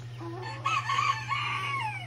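A rooster crowing once, a drawn-out crow of about a second and a half that starts about half a second in and tails off with a falling end, over the steady hum of a small electric fan.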